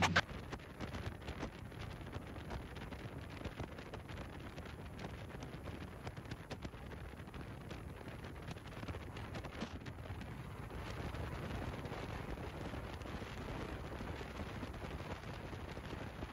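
Wind buffeting the microphone and water rushing past a moving boat's hull: a steady noisy rush full of small crackles, with no engine tone standing out. It grows a little louder about two-thirds of the way through.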